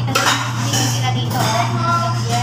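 Dishes and cutlery clinking, with a few sharp clicks early on, over a steady low hum and voices in the background.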